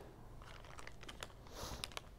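Faint handling of an AED kit's pad packaging: a few light clicks and a brief crinkle about one and a half seconds in.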